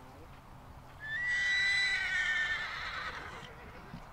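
A horse whinnying once, starting about a second in and lasting about two and a half seconds: a high call that wavers and falls in pitch as it fades.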